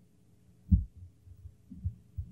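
A few short, low, dull thumps, the loudest about three-quarters of a second in, over a faint steady hum on an old lecture recording.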